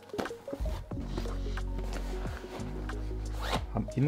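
The zipper on the front pocket of a Gewa Cross 30 padded guitar gig bag being pulled open, with background music of steady low notes underneath.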